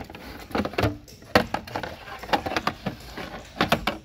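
A string of sharp clicks and knocks from a hard plastic bit-set case being handled and its snap latches opened.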